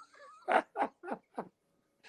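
A man laughing: about four short laughs in quick succession, a little under a third of a second apart.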